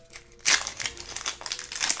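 Foil wrapper of a Yu-Gi-Oh booster pack being torn open by hand and crinkling, starting about half a second in.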